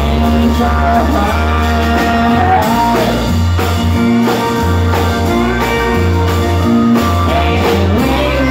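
A small band playing live: strummed acoustic guitar, electric keyboard with steady low bass notes, and a steel guitar holding long notes that slide in pitch.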